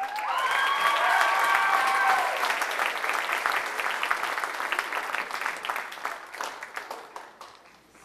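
Audience applause, with a few voices calling out over it in the first two seconds; the clapping fades away toward the end.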